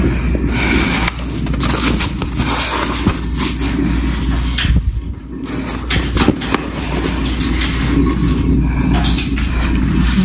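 Curtain fabric rustling and brushing against the microphone as the curtains are untied and drawn shut: dense crackling and swishing that dips briefly midway, over a steady low hum.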